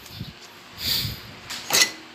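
Air-cooled cylinder barrel of a Honda TMX155 engine being lifted off its piston and studs: two short metal scraping noises, one about a second in and a sharper clink near the end.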